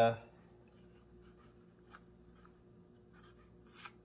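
Quiet kitchen room tone with a faint steady hum and a few faint, light ticks; a short hesitation sound ends the speech right at the start.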